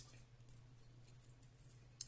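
Near silence with a short click at the start and a few faint ticks after it: regular scissors snipping the lace of a synthetic lace-front wig.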